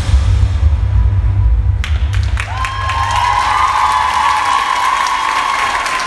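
The dance music ends on a loud, deep boom that lasts about two seconds, then an audience breaks into applause and cheering, with one long, high cheer held over the clapping.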